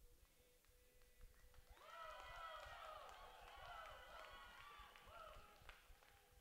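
A faint, distant voice talking, from about two seconds in to near the end, too indistinct to make out words.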